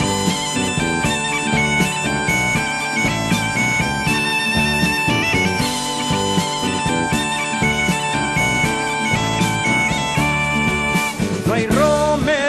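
Background music: an instrumental passage of a Spanish song in which a bagpipe (gaita) plays the melody over a steady drone, with drum accompaniment. The drone stops near the end as singing begins.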